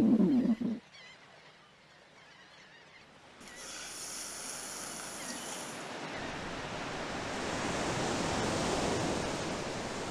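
A man's laugh trailing off in the first moment, then ocean surf: a wash of waves that builds from about three seconds in and is loudest near nine seconds.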